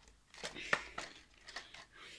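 Plastic remote-control toy car being handled and switched on: a few short clicks and knocks, the sharpest about three quarters of a second in, as its power switch is flicked and it is set down on the floor.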